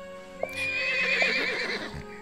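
A unicorn whinnying once, a wavering, quivering call that starts about half a second in and lasts over a second, over soft background music holding a steady tone.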